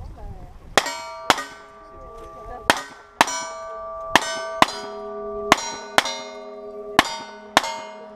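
Ten revolver shots in quick pairs, each followed at once by the ringing of a hit steel target. The ringing tones carry on and overlap between shots.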